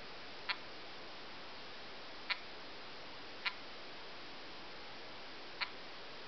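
Four short, sharp clicks at irregular intervals as menu items are tapped on a 3.5-inch touchscreen bar phone, over a faint steady hiss.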